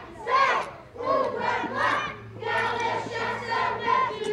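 A group of children's voices shouting together in short, repeated loud calls.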